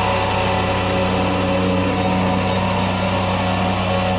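Dissonant black/death metal: a dense, steady wall of heavily distorted sound over held low notes.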